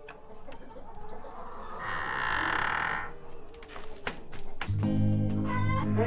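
A rooster crows once, for about a second, about two seconds in. Background music with a steady low bass comes in near the end.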